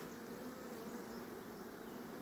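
Honeybees buzzing steadily around a brood frame lifted out of an opened hive, a faint continuous hum.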